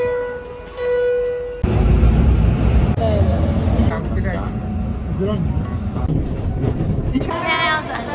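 A Tokyo subway station's electronic chime holds a few steady tones, then cuts off abruptly about one and a half seconds in. It gives way to the loud, low rumble of a moving train heard from inside the car, with voices over it.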